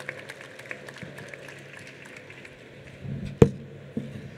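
Hall background noise with scattered small clicks, then a brief low rumble and a single sharp thump about three and a half seconds in.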